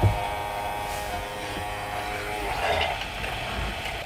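Small battery-powered bottle pump running with a steady whine while diesel is drawn up its tubing to prime it. The tone fades about two and a half seconds in, giving way to a brief rougher hiss.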